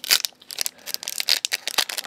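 Foil trading-card booster pack wrapper crinkling in the hands, with irregular crackles as the pack is handled.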